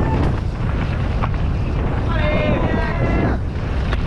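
Wind buffeting the chest-mounted camera's microphone as a mountain bike runs fast down a dirt trail, a steady low rumble. Midway through, a spectator's voice calls out in one long shout for just over a second.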